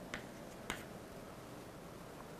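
Chalk tapping against a chalkboard while writing: two short, faint clicks in the first second, the second a little sharper.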